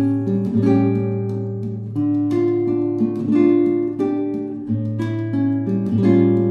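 Background music: an acoustic guitar playing plucked notes and strummed chords over a bass note that changes every couple of seconds.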